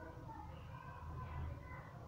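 Faint music with held, melodic tones over a steady low hum.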